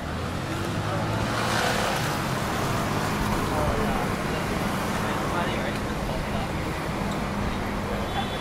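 Road traffic running past on a city street, a steady engine hum that swells as a vehicle goes by about two seconds in, with passers-by talking.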